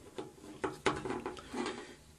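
Faint handling noise: a few soft clicks and rubs as a small handheld mirror is held and shifted in front of a washing machine's water inlet.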